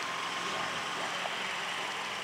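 Steady outdoor background noise, an even hiss with no distinct events standing out.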